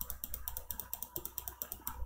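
Computer mouse clicking rapidly and evenly, about ten small ticks a second, as the thread-depth value in the dialog is stepped up.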